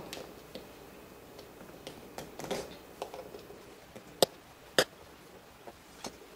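Faint scraping and small metal clicks of hand tools prying a tight staple out of a tap shoe's sole, with two sharp clicks a little over half a second apart near the end.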